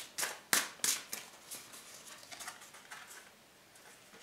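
Tarot cards handled and drawn from the deck: several sharp card snaps in the first second or so, then fainter soft clicks and rustling that die away.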